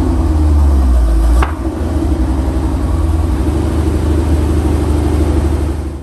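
1985 Corvette's 5.7-litre Tuned Port Injection V8 running at idle, loud and steady through the exhaust, with a single click about a second and a half in.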